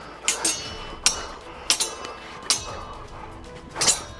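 Steel longswords clashing blade on blade in sparring, about seven sharp ringing clinks at an uneven pace, with the last one near the end.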